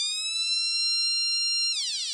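Electronic siren from a transistor police/ambulance alarm kit, sounding through a small loudspeaker while its push switch is pressed: a tone rich in overtones that finishes rising, holds a steady high pitch, then begins to glide down near the end. This is the working circuit's police-siren sound.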